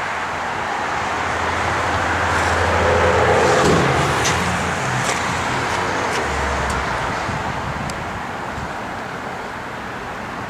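A road vehicle passing by: its noise swells to a peak about three and a half seconds in and then fades away, with a tone that falls in pitch as it goes past.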